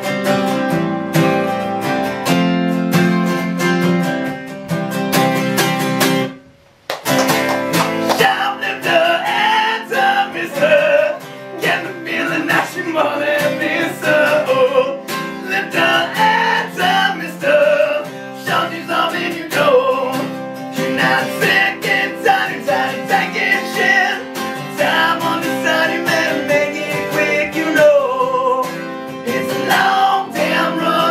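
Live solo acoustic guitar, strummed, with a man singing over it. The guitar plays alone for the first six seconds, breaks off briefly around seven seconds, and the voice comes in about eight seconds in.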